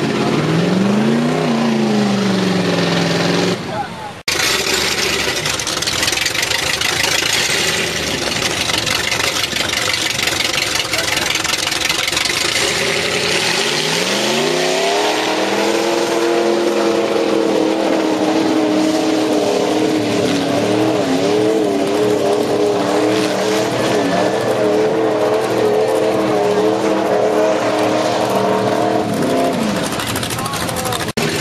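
Mud-bog trucks' engines revving hard as they drive through a mud pit. Near the start an engine revs up and down twice; after a cut comes several seconds of dense rushing noise; then about halfway through an engine climbs to high revs and holds there, wavering, before dropping off near the end.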